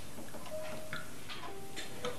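Faint ticking, about two ticks a second, under a few soft held tones.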